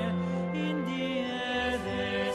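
Choir singing sustained chords in harmony, a lower part stepping down in pitch about halfway through, with a few brief hissed consonants.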